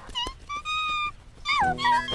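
Cartoon birds whistling a tune: a few quick chirps, one held note, then falling whistled phrases. Light music comes in underneath about one and a half seconds in.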